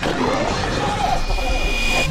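A man yelling over a loud, dense roar of noise.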